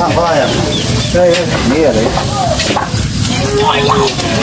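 People talking, their voices overlapping, over a steady hissing background noise.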